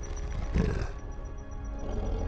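A short throaty growl from a reptile-faced creature character about half a second in, over low, steady droning film-score music.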